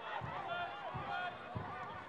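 Live football-match ambience: several voices calling and shouting from the pitch and the stand, overlapping, with a few dull thuds underneath.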